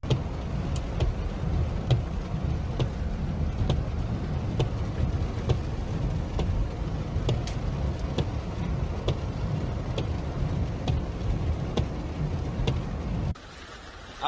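A car driving through a flooded street, heard from inside the cabin: a steady low rumble of engine and tyres through water, with a light tick repeating about once a second. It cuts off sharply near the end.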